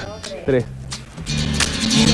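A small group starts to cheer and clap over steady background music as birthday candles are blown out, beginning about a second and a half in and growing louder.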